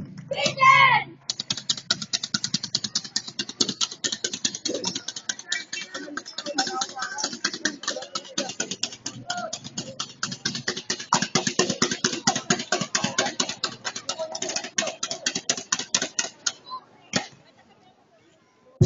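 A fast, even percussive beat of sharp strikes, several a second, with voices faintly underneath; the beat stops about a second before the end.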